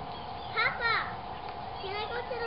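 A young child's voice: two short, high-pitched vocal sounds about a third of a second apart, shortly after the start.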